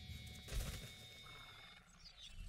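Faint anime soundtrack: quiet background music and sound effects, with a brief swell about half a second in.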